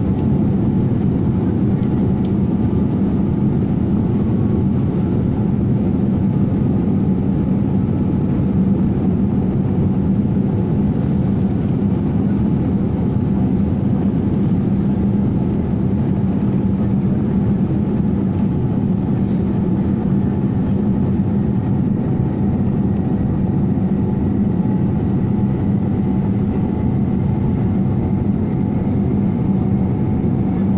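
Jet airliner's engines heard from inside the passenger cabin during the takeoff roll: a loud, steady rumble, with a faint whine slowly rising in pitch in the second half.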